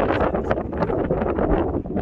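Wind buffeting the microphone: a loud, uneven rushing with a deep rumble underneath and rapid irregular gusts.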